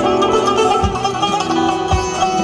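Azerbaijani tar, a long-necked plucked lute, played with a plectrum: a quick run of plucked notes over ringing, sustained strings. Two low thumps, one about a second in and one near the end.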